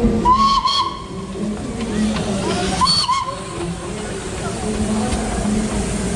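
Darjeeling Himalayan Railway steam locomotive hissing steam, with two short whistle toots, one about half a second in and one about three seconds in.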